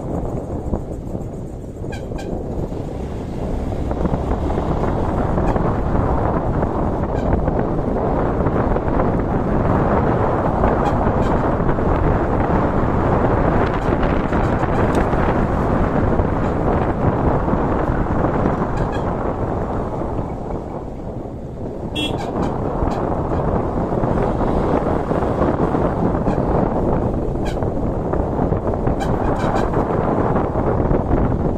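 Motorcycle riding noise: wind rushing over the microphone together with the running engine. It eases off briefly about two seconds in and again near twenty-one seconds, and a short horn toot comes with each easing.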